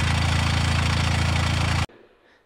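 Toyota GR Corolla's turbocharged three-cylinder engine idling steadily with the racket of an ATS twin-disc clutch, noisy without the stock clutch's flex plate. It cuts off abruptly near the end.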